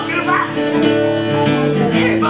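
Two acoustic guitars strumming a blues, played live, with a voice heard briefly near the start.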